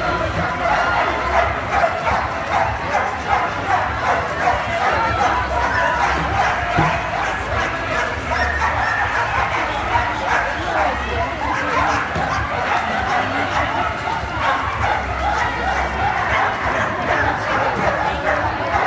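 Flyball dogs barking excitedly over the steady chatter and shouts of a crowd.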